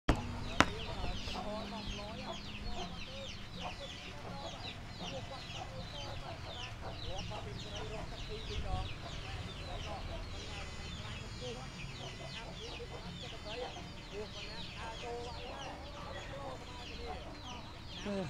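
Chickens clucking and peeping: a dense, continuous run of short falling chirps, with a single sharp click about half a second in.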